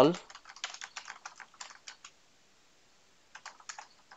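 Computer keyboard typing: a quick run of keystrokes for about two seconds, a pause of about a second, then a few more keystrokes near the end.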